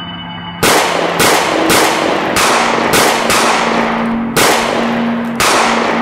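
A string of about eight gunshots at uneven intervals, each with a long ringing echo, over ambient background music with a sustained low tone.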